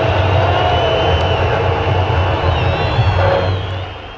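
Crowd noise with whistling over a steady low rumble, fading out near the end.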